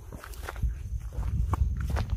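Footsteps crunching and scuffing over rough limestone rock and grass: several uneven steps, each a short knock.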